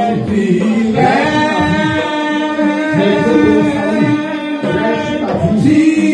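Slow worship singing: voices hold long notes at several pitches, changing note about a second in and again near the end, with no drums.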